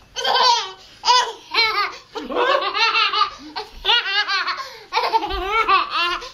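A toddler laughing hard in a long run of high-pitched bursts, delighted at being tipped about on an adult's shoulders.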